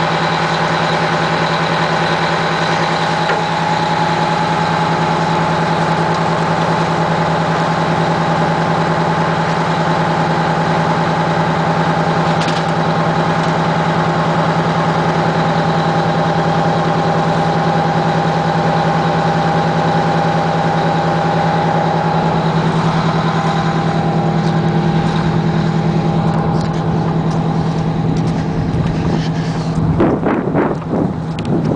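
Fire engine's engine running steadily at constant speed: a low hum with a steady whine above it.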